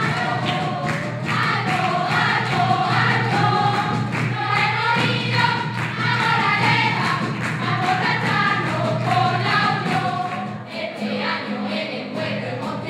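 A carnival group singing in chorus, accompanied by acoustic guitar and drums that keep a steady beat.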